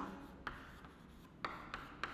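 Chalk writing on a chalkboard: faint scratching, with sharp taps as the chalk strikes the board about half a second in and twice near the end.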